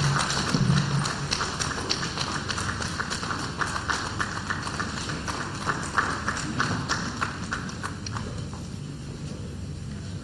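Scattered audience clapping that thins out and fades toward the end.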